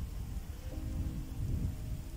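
Wind buffeting an outdoor microphone: an irregular low rumble, with a faint steady hum coming in about a third of the way through.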